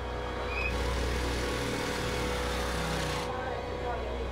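City street ambience: a steady low rumble of traffic, with a wash of noise that swells for a couple of seconds in the middle.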